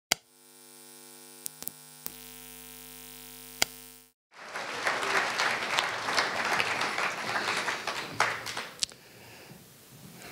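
A steady electrical hum with a few sharp clicks, cut off abruptly after about four seconds; then audience applause, the loudest part, which thins out and fades near the end.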